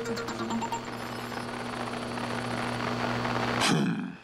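Cartoon soundtrack: a steady low hum under an even hiss, broken near the end by a short, loud sweeping sound.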